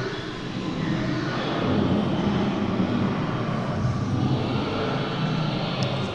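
Low, rumbling growls from an animatronic dinosaur exhibit's sound effects, swelling and easing continuously.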